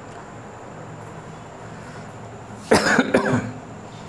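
A man coughing: quiet room tone, then two quick coughs close together about three seconds in.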